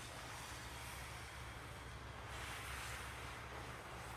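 Steady ice-rink background noise: a low hum under an even hiss, which swells slightly a little over halfway through.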